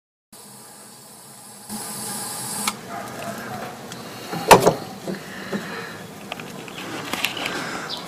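Kindling being lit in the firebox of a steam launch boiler: a short hiss near two seconds in, then scattered small crackles and clicks, with one sharp knock about halfway through.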